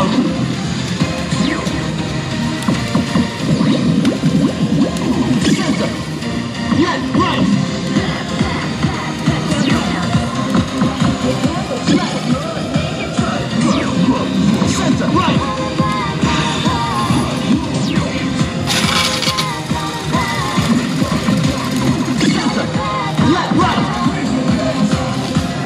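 Electronic music and game sound effects from a Disc Up pachislot machine in play, over the constant din of a busy pachislot hall.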